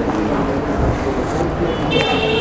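Steady restaurant background din: a low, even rumble with indistinct voices in it.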